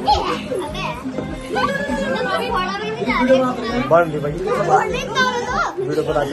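Several adults and children talking and calling out over each other, with background music playing under the voices.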